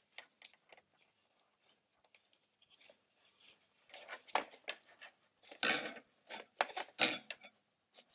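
Paper-plate-and-card hat being handled while a ribbon is tied onto it: paper rustles and light knocks. They start faint and scattered, then grow louder and busier in the second half.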